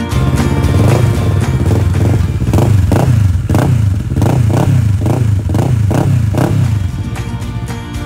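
Kawasaki Versys 650 two-cylinder engine running through an aftermarket Delkevic exhaust. It idles, then is blipped in a string of quick revs, about two a second, from about two and a half seconds in, and settles back near the end.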